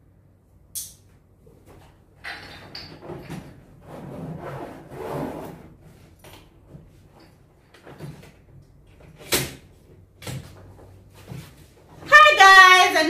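A hard-shell suitcase being packed and closed on a bed: rustling and shuffling of its contents, then a few sharp clicks, the loudest about nine seconds in.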